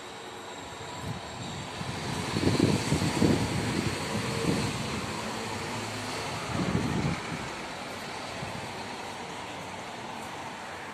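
Street traffic: a road vehicle passes, its sound swelling over a couple of seconds and fading, with a second, shorter pass a few seconds later over a steady background of street noise.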